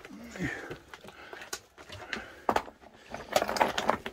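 Irregular knocks and scrapes of a caver scrambling over rock in a tight cave passage, clustering near the end, with a short vocal grunt near the start.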